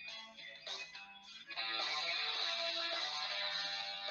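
Background music with guitar: separate plucked notes at first, then about a second and a half in it turns louder and fuller, with strummed chords.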